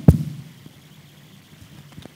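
Handheld microphone being handled: a loud thump at the start that dies away within half a second, then quiet room hiss with a small knock near the end.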